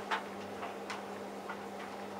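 Hotpoint Aquarius+ TVF760 vented tumble dryer running, its drum turning with a steady low hum, while an already-dry load tumbles and makes light, irregular ticks against the drum, about five in two seconds.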